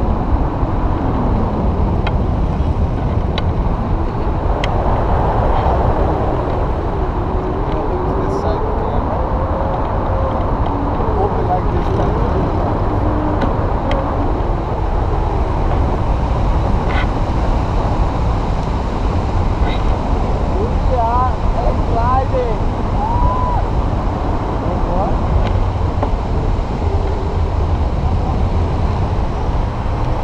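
Steady rushing wind on the microphone, heaviest in the low end, with faint voices underneath. A few short rising chirps come a little past the middle.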